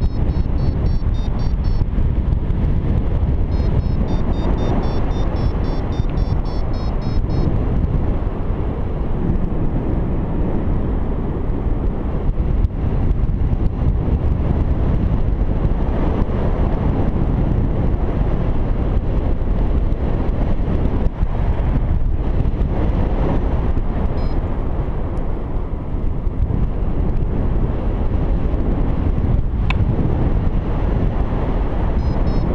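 Steady wind rushing over the microphone of a paraglider in flight. A flight variometer beeps rapidly and evenly near the start, then again from about four to seven seconds in, signalling lift in a thermal.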